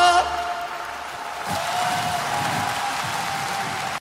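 A held, wavering sung note ends at the start, giving way to audience applause with a faint lingering instrument note, which cuts off abruptly at the end.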